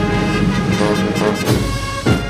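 Ceremonial brass band music: a band playing sustained brass chords, with the chord changing about three-quarters of the way through.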